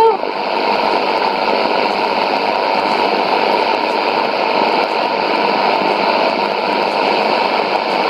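Shortwave AM radio static from a Sony ICF-2001D receiver tuned to 11750 kHz: a steady, loud hiss with no programme audio, left once the station's music ends.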